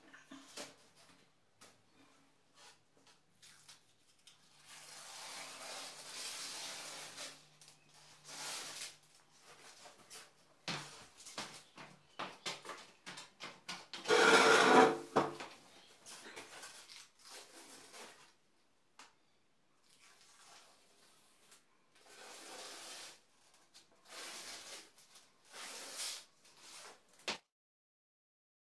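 Masking tape being peeled off a freshly painted wall: a run of irregular rasping tears of different lengths, the loudest about halfway through, with shorter, quieter pulls near the end.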